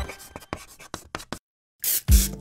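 Title-card sound effects: a run of faint scratchy clicks like a pen writing, a brief dead silence, then a short hiss like a spray can, cut off as the theme music starts.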